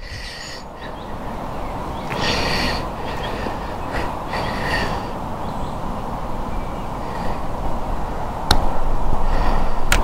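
Steady wind rushing over the microphone, growing a little stronger near the end. A single sharp click is heard late on.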